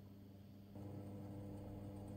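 Near silence, then, under a second in, a steady low hum starts: a fan oven running with the pork belly slices cooking inside.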